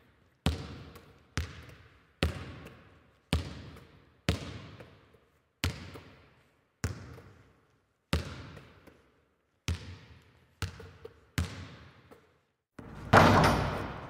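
A basketball bouncing on a hard court, slow single bounces about one a second, each ringing out in a reverberant gym. Near the end comes a louder, longer crash.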